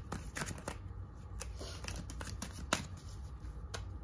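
A tarot deck being shuffled by hand: a run of quick card clicks and rustles, with one sharper snap a little past the middle.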